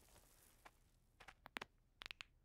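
Near silence as an earlier crash dies away, with a few faint, short ticks in the second half.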